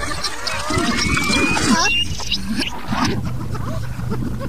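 Effects-distorted cartoon soundtrack: many short, pitch-bending voice-like calls from cartoon characters over a steady low drone, with a thin rising whistle in the first half.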